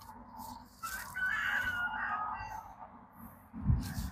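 A wavering, high-pitched animal call lasting about a second and a half, followed near the end by a low thump.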